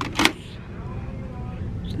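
Low steady rumble of a handheld camera being moved along a store aisle, with one short sharp click about a quarter of a second in as a hand takes a product from the shelf.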